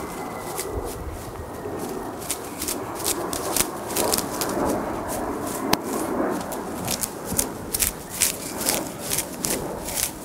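Leaves being plucked by hand from a Japanese maple bonsai: many quick little snaps as the leaves are pulled off, over a continuous rustle of foliage. The leaf plucking thins the tree out.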